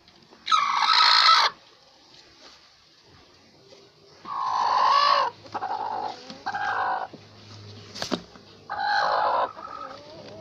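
A hen sitting on her nest calls out about five times, each call lasting under a second, as a hand reaches under her for her eggs. The calls are a sitting hen's protest at being disturbed. A single sharp click comes near the end.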